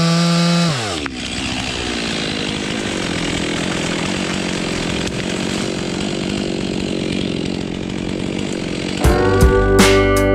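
Chainsaw at full throttle, released about a second in, its pitch falling as the engine drops back to idle. A long, rough, noisy stretch follows. About nine seconds in, music with plucked guitar begins.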